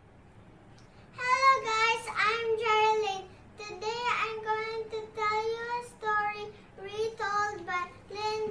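A young girl singing alone, unaccompanied, in a high voice with held, fairly level notes in short phrases, starting about a second in.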